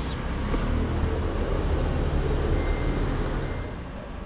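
A motor vehicle's engine running close by, a low steady rumble that fades away near the end.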